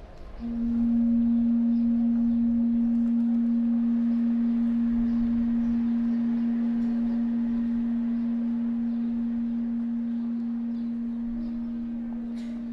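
A single low musical tone comes in about half a second in and is held, slowly fading, with a slight regular waver.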